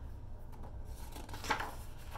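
A page of a hardcover picture book being turned: one brief papery swish about one and a half seconds in, over a low steady hum.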